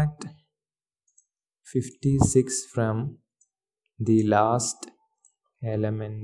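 A man speaking in three short phrases, with computer keyboard keys clicking as he types.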